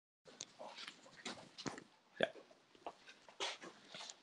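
Irregular clicks, knocks and rustles of a microphone being handled, setting in suddenly out of dead silence, with one sharper knock a little past the middle.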